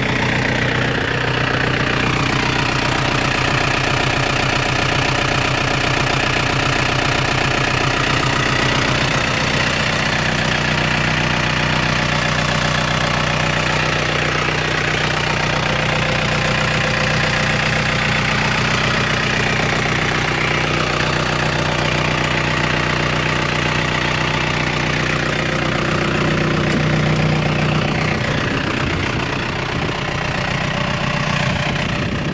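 New Holland TCE50 compact tractor's diesel engine idling steadily.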